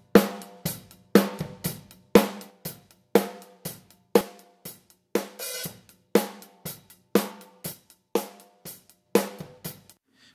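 Recorded drum kit heard through its overhead ribbon microphones, with a parallel copy of the overheads, EQ'd for more low end, blended in. A steady beat of about two hits a second, snare and cymbals ringing out after each hit.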